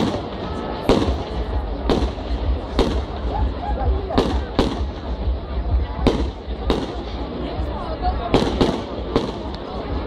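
Fireworks display: aerial shells bursting overhead in a run of sharp bangs, about one a second, some in quick pairs.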